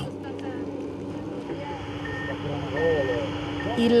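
A vehicle's reversing alarm beeping three times in the second half, short single-pitch beeps evenly spaced, over a steady engine drone and outdoor background noise.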